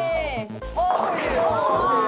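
Women's high-pitched excited yelling and shrieking, rising and falling in pitch, over background music. The yells swell about a second in.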